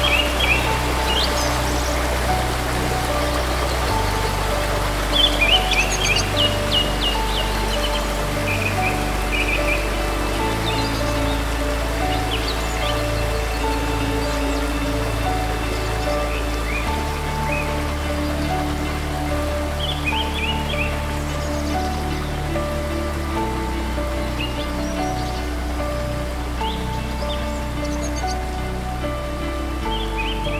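Soft instrumental background music: sustained low chords that change every few seconds under a slow melody of held notes. Short bursts of bird chirping come at intervals over an even hiss like running water.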